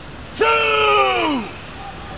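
A single drawn-out shout from a person, held for about a second and then falling away in pitch.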